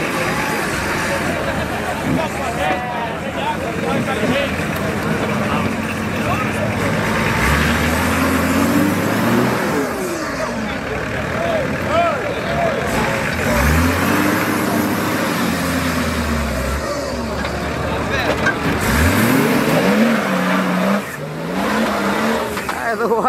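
Diesel engine of a short-wheelbase Nissan Patrol 4x4 revving hard under load as it climbs a steep dirt bank, its pitch rising and falling in several surges as the throttle is worked. Crowd voices are heard around it.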